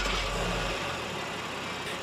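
2024 Honda Pilot TrailSport's 3.5-liter V6 idling steadily just after a push-button start, settling slightly quieter as it runs.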